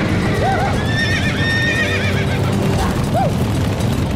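Horses whinnying several times over a steady rumble of hooves from a stampeding herd. The longest whinny is a high, wavering one about a second in; short rising-and-falling calls come near the start and near the end.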